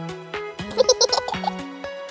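A farm animal bleats once, a wavering cry about a second long starting just after half a second in, over plucked-guitar background music.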